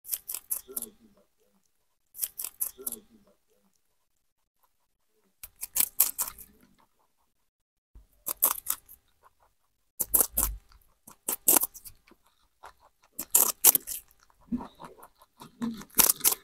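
Lop-eared rabbit crunching on a chunk of crisp fruit, close to the microphone: bursts of rapid crunchy clicks about a second long, with short pauses between bites.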